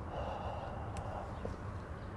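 One long, soft breath blown out, lasting about a second: a slow deep exhale following a cued deep breath in, with a small click near its end.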